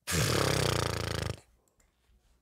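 A man's rough, raspy throat sound, lasting about a second and a half before cutting off.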